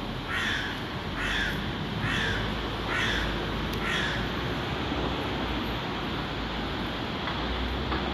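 A crow cawing five times in a row, harsh calls a little under a second apart in the first half, over a low steady rumble.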